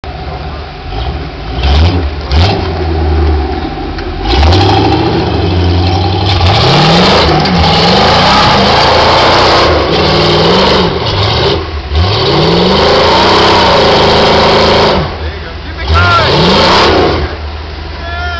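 Rock buggy's engine revved hard in repeated bursts, its pitch rising and falling again and again as the buggy climbs a steep rock ledge. It eases off near the end, then surges once more.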